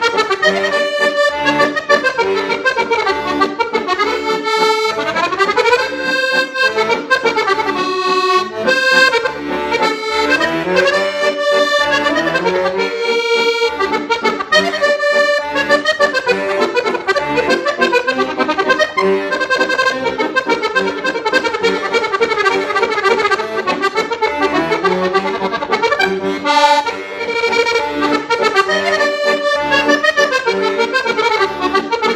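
Farfisa piano accordion playing a lively tune: quick runs of melody notes on the right-hand keyboard over a regular bass-and-chord accompaniment.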